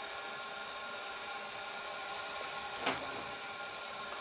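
A steady background hum with several fixed tones over a faint hiss, and one brief tap about three seconds in.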